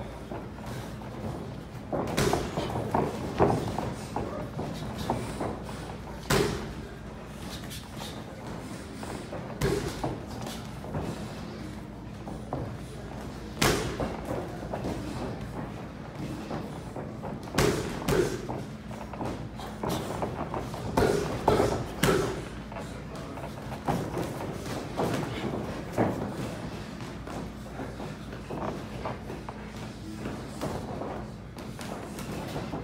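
Boxing gloves landing punches during sparring: irregular thuds and slaps a few seconds apart, sometimes in quick pairs or short flurries, over a steady low hum.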